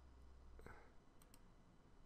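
Near silence with two faint computer-mouse clicks a little past the middle, over a low room hum.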